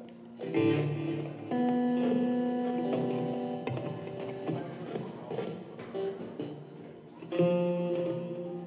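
Guitar chords played one at a time and left to ring out: three chords in all, about half a second in, about a second and a half in, and another a little after seven seconds.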